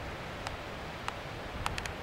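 Steady hiss of open-air background noise, with a few faint ticks: one about half a second in, one about a second in, and several close together near the end.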